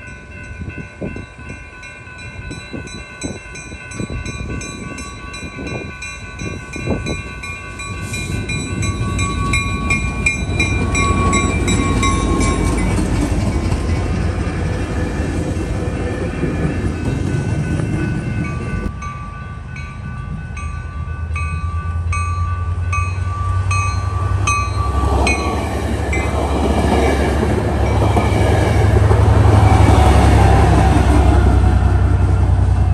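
Railroad crossing bell ringing with repeated strikes while two Trinity Railway Express commuter trains pass through the crossing. A rumble of wheels on rails builds from about eight seconds in. A diesel locomotive's engine grows loud near the end as it passes close by.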